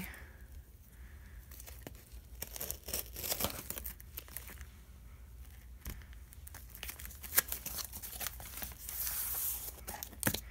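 Packing tape on a cardboard shipping box being slit with a folding knife and torn apart, with scattered small crackles and scrapes. The sound grows denser near the end as the cardboard flaps are pulled open.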